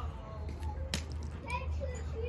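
Children's voices chattering in the background, with a single sharp click about a second in, over a steady low hum.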